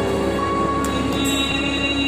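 Solo singing amplified through a microphone and PA, the voice holding long, steady notes.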